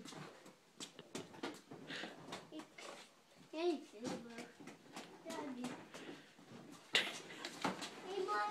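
A toddler's quiet babbling and small vocal sounds, with two sharp knocks close together near the end.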